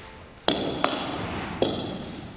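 Table tennis ball striking bat and table in a rally: three sharp clicks with irregular gaps, each ringing on in a reverberant hall.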